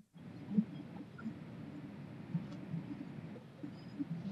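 Faint, muffled man's voice speaking in a language other than English, in short broken phrases, played over loudspeakers into the room. There is a brief moment of silence right at the start.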